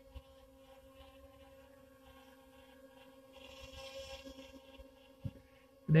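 DJI Tello mini quadcopter hovering in place, its propellers giving a faint, steady hum. A soft rush of wind rises about three and a half seconds in, and there is a short knock near the end.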